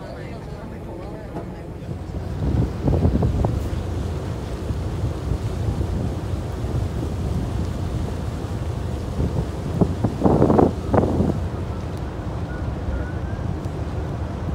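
Wind buffeting the microphone over the steady low rumble of a boat moving through the water. Two louder gusts come, about three seconds in and again around ten to eleven seconds.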